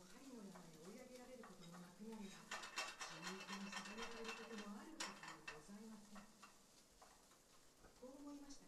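A woman's voice reading aloud in Japanese, quiet and drawn out, trailing off near the end. A few light clicks and clinks come around the middle.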